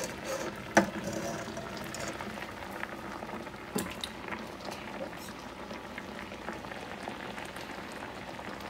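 Water boiling hard in a pan of potato pieces, with a steady bubbling hiss. A sharp knock about a second in, and a smaller one near the middle.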